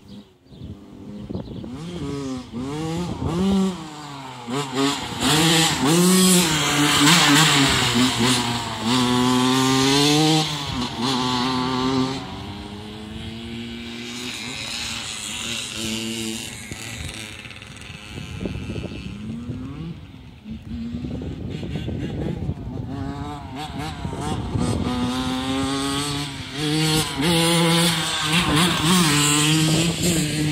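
Suzuki RM85's single-cylinder two-stroke engine under way, its pitch climbing and dropping again and again as the throttle is opened and rolled off through the gears. It is loudest for several seconds from about five seconds in and again near the end, and quieter in between.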